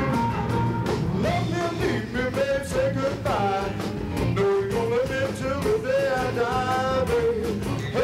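Live blues band playing: a harmonica lead with sliding, bent notes over electric bass, drums and guitar.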